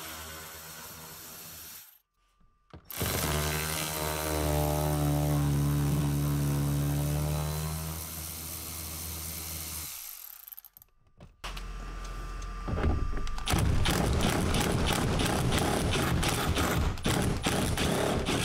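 Cordless power ratchet spinning 10 mm bolts out of a car's bumper: a short faint run, then a longer steady whine that sags near its end. From about eleven and a half seconds a cordless impact tool hammers rapidly on a bolt that is rusted in place.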